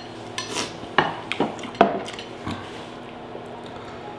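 Tableware knocking and clinking on a tabletop: several sharp knocks in the first half, the loudest about two seconds in, then it settles to a low room hum.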